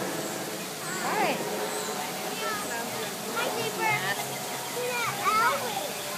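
Indistinct voices of onlookers with short, rising and falling calls, over a steady rush of running water.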